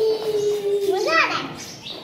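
A young child's voice at play on a swing: a long held "aaah" that slowly dips in pitch, then a short squeal that rises and falls about a second in.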